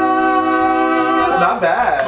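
Male voices holding a sustained three-part vocal harmony chord, as the third voice settles onto its note. The chord breaks off about a second and a half in, into talk and laughter.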